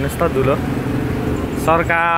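A person talking over busy street traffic, with vehicle engines running underneath.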